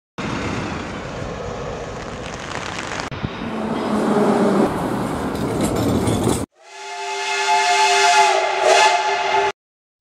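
Street traffic noise as a city bus drives past. After a cut, a tram's wheels squeal steadily through a curve, swelling in over the first second, then stop abruptly.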